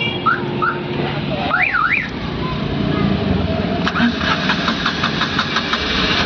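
Tata Nano's two-cylinder petrol engine being started after a wiring repair. It catches and runs with a steady rapid beat from about four seconds in. Earlier there are a few short high chirps and a rising-and-falling whistle.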